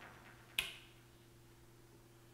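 A single sharp click about half a second in, a button being pressed on the Elektron Digitone synthesizer, after the last of the synth pattern fades out. A faint steady hum sits underneath.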